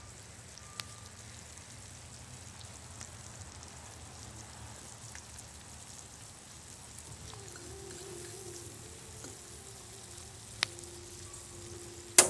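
Sliced onions sizzling faintly in melted butter in a skillet, a soft steady crackle with a few light ticks.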